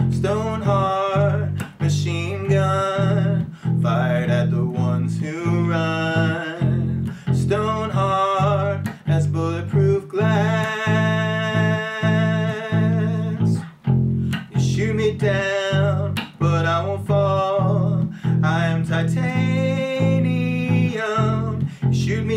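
Squier electric bass guitar playing steady repeated low notes through an F–G–Em–Am chord progression, with a man's voice singing along over it.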